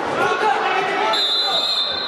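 Referee's whistle blown once, a steady shrill tone lasting about a second and starting a little after a second in, signalling the restart of play for a free kick. Children's and spectators' voices echo in the hall before it.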